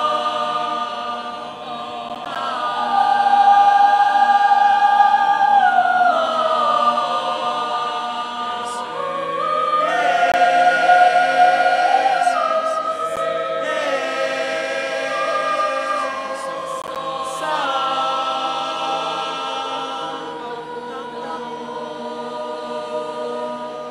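A choir singing a cappella: held chords in several parts, the upper line stepping and sliding between long notes, the sound swelling louder twice and easing off again.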